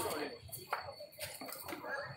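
People talking nearby, with a few sharp clinks scattered through the voices.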